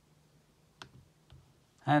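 MacBook Air trackpad clicked, a few short sharp clicks about a second in, as a dialog box is dismissed.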